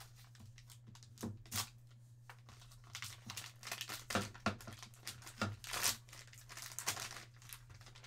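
Plastic wrapping crinkling and tearing in irregular bursts as it is pulled off a graded card slab by hand, over a steady low hum.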